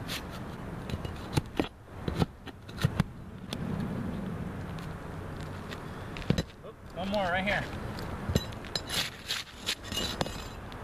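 Damaged asphalt shingles being pried and torn off a roof with a flat metal pry bar: scraping, ripping and sharp knocks of metal on shingle and nails, in scattered strokes with a quicker run near the end. A brief warbling squeal sounds about seven seconds in.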